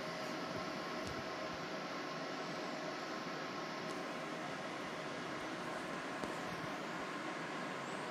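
Steady, even background hiss, with a faint tick about a second in and another near the six-second mark.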